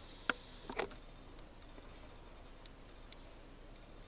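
Quiet room tone with two small clicks within the first second, then only faint, steady hiss: light handling noise while the jacket fabric is shown close up.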